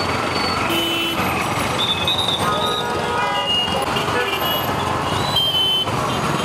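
Street traffic in a jam: engines running, with many short horn toots and beeps at different pitches scattered throughout.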